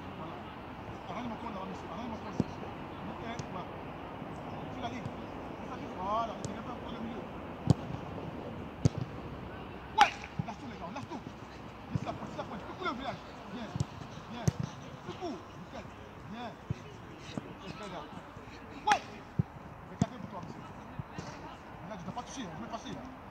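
Outdoor training-pitch ambience: faint children's voices and calls in the distance, with scattered sharp knocks, the loudest about halfway through and another near the end.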